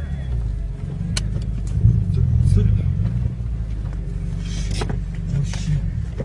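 Car heard from inside its own cabin, a steady low engine and road rumble, with a few faint clicks.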